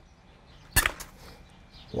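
Long-handled pruning loppers snapping through a dry, dead stem of a sandpaper vine (Petrea volubilis) at its base: one sharp crack a little under a second in.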